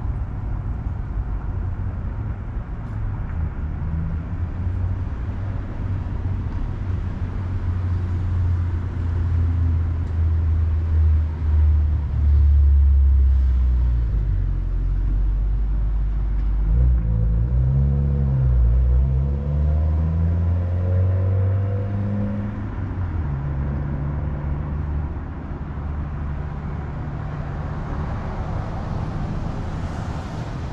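Road traffic passing close by: a steady low rumble that grows louder in the middle, where a vehicle's engine note rises and falls as it goes past.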